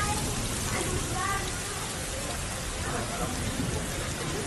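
Heavy rain and hail pouring down steadily in a dense, even hiss, with faint voices underneath.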